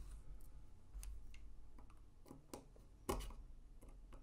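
Faint scattered clicks and ticks of small metal parts as a folding knife is handled and a small screw is started into it, with one louder click and knock about three seconds in.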